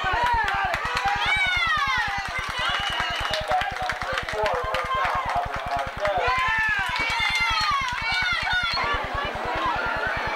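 Football crowd shouting and cheering: many overlapping voices with long rising-and-falling yells, over a rapid, even low pulsing hum.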